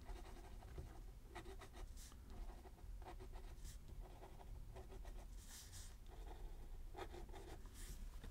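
Fineliner pen nib scratching on sketchbook paper in a series of short, faint strokes, drawing small flies.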